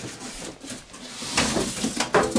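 Rustling of a keyboard's printed protective wrap and scraping of its cardboard carton as the wrapped keyboard is lifted out, with a louder rustle about a second and a half in.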